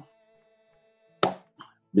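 A pause in a man's speech over faint, steady background tones. A little over a second in comes one short, sharp mouth noise, followed by a fainter one.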